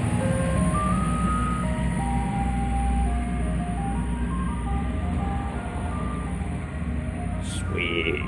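Ice cream truck's jingle playing a simple tune of single electronic notes through its loudspeaker, over the steady low hum of the truck's engine.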